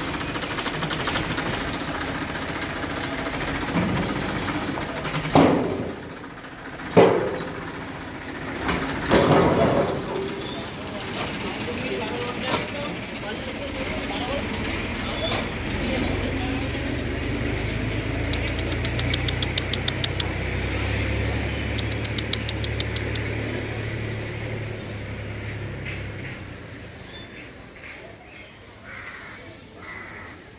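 A male lion calling: a long, low rumble that starts about midway as it raises its head with its mouth open and runs for about ten seconds. Over it and before it come visitors' voices, with a few loud calls in the first ten seconds.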